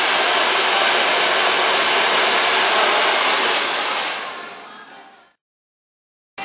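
Handheld hair dryer blowing steadily on curly hair as it is stretched out with the fingers, fading out after about four seconds.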